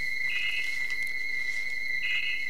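Steady high-pitched trill of chirping insects, with a short, higher burst of chirping about half a second in.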